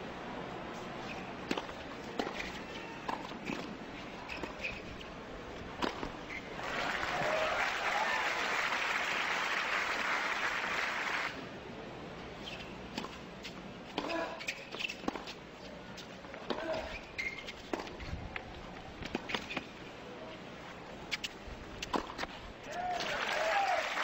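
Tennis rallying on a hard court: sharp racket strikes on the ball, with crowd applause for about five seconds midway and again building near the end.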